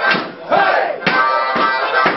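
Live blues music in an instrumental passage: a wailing lead line that bends in pitch, over a steady beat of about two strokes a second.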